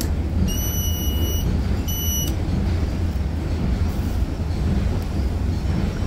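Two high electronic beeps, a longer one about half a second in and a short one about two seconds in, over a steady low background rumble.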